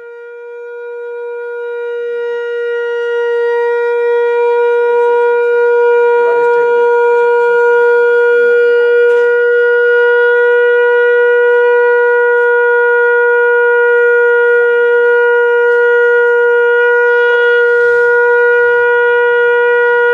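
A conch shell (shankh) blown in one long, unbroken note of steady pitch. It swells over the first few seconds and then holds loud and level.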